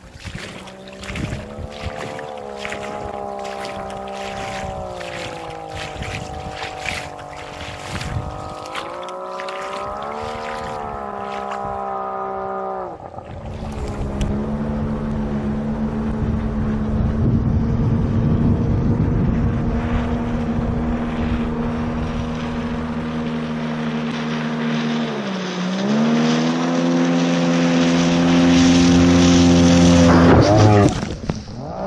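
Jet outboard motor of an inflatable boat running, with a dense crackle of quick splashes over the engine tone for the first part. The sound changes abruptly about 13 seconds in to a steadier engine tone. Its pitch drops briefly about 25 seconds in, then climbs again and grows louder near the end as the boat approaches.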